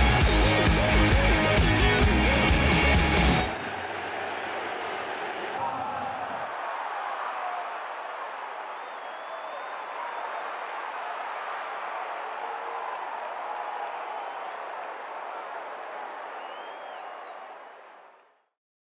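Football stadium crowd cheering and chanting as a steady roar, fading out at the end. It follows loud backing music with a beat that cuts off about three and a half seconds in.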